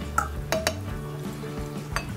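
Soft background music with a few light metallic clinks: a paintbrush knocking against a metal tin watercolor palette, three in the first second and another at the very end.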